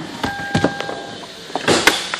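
A steady electronic beep lasting about a second, with a few clicks, then a louder clunk and rustle near the end as the car's door is opened.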